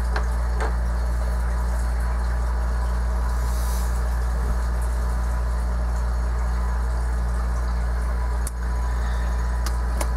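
Steady low hum with an even hiss over it, dipping briefly about eight and a half seconds in.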